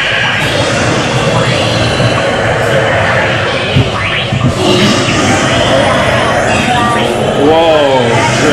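Roller coaster train rolling along its track through an indoor dark-ride section: a steady low rumble mixed with the ride's own soundtrack and indistinct voices.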